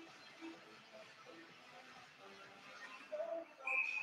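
Quiet ice-rink background during a stoppage in play: a faint steady hum with scattered short, faint tones.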